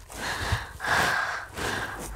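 A person breathing hard close to the microphone, about three breaths.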